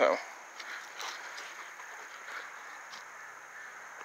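Quiet outdoor background: a steady, even hiss with a few faint short ticks.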